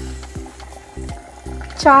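Curry bubbling at the boil in a clay pot, a soft hissing sizzle, under background music of short repeated notes. A voice starts near the end.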